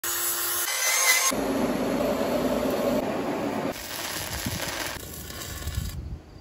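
Cordless angle grinder grinding a rusty steel I-beam, the grinding noise changing abruptly several times as short clips follow one another.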